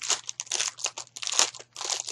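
Clear plastic packaging crinkling as it is handled, in irregular crackles, with the loudest crackle about one and a half seconds in.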